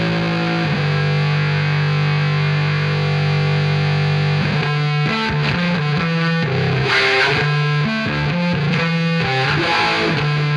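Distorted electric bass guitar solo through effects. One note rings out, held from about half a second in until about four and a half seconds, then a run of quick picked notes follows.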